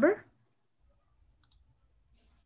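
A single short, sharp click from a computer mouse button about one and a half seconds in, amid near quiet after a voice trails off.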